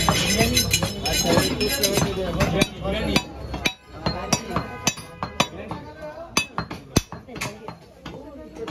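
Heavy butcher's cleaver chopping through a cow leg bone on a wooden block: a string of sharp strikes from about three seconds in, the loudest near the end.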